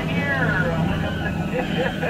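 Steady low hum of the tour boat's motor under voices.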